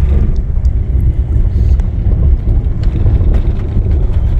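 Low rumble of a car moving slowly, road and engine noise heard from inside the vehicle.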